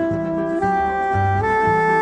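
Jazz saxophone playing three long held notes that step upward, over a low bass note repeating about twice a second.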